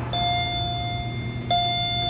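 Electronic elevator hall-lantern chime sounding two dings at the same pitch, the second about a second and a half after the first, announcing a car going down.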